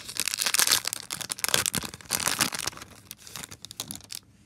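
Foil wrapper of a trading-card pack being torn open and crinkled by hand, a dense crackling of many small snaps that dies away near the end as the cards come out.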